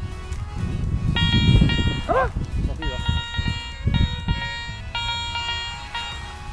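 Metal detector giving steady buzzing signal tones over a target. The tones begin about a second in, switch pitch a few times and break off briefly between them, over a low rumble, with a short laugh about two seconds in.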